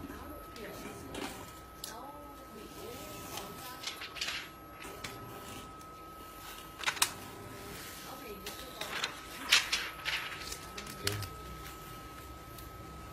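Plastic carrier film being peeled off a freshly heat-pressed gold-foil jersey number, giving a few sharp crackles, the loudest about seven and nine and a half seconds in. A faint steady high tone runs underneath.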